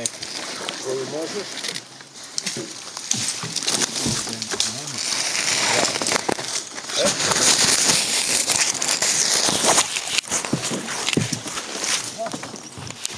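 Branches and twigs rustling, crackling and scraping against a canoe as it is forced through brush, louder and denser in the second half.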